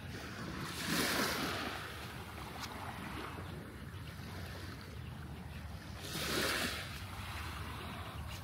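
Small, gentle waves lapping and washing up onto a sandy beach, rising in a soft hiss twice, about five seconds apart. A steady low wind rumble on the microphone runs under it.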